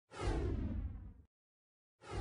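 A whoosh sound effect for an animated logo intro, sweeping downward in pitch and fading out about a second in.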